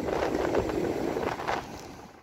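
Strong wind buffeting the phone's microphone, a rough rumble that drops away near the end.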